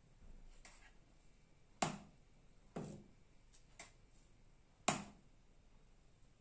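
A ladle knocking against a stainless-steel soup pot and serving bowl while thick soup is dished out: sharp clinks about two seconds in and again near five seconds, with lighter clicks between.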